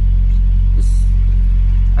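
Semi truck's diesel engine idling, a steady low rumble heard inside the cab, with a faint brief hiss about a second in.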